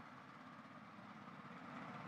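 Near silence: faint steady background noise from an outdoor microphone, with no distinct sound.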